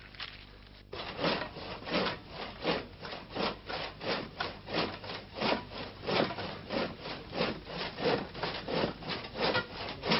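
Rhythmic scraping by hand, a rasping stroke repeated about three times a second, starting abruptly about a second in and keeping an even pace.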